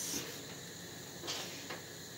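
Faint handling sounds over quiet room tone: a gloved hand setting a raw meat patty down in a plastic tray and reaching back into a bowl of minced meat, with a couple of brief soft rustles in the second half.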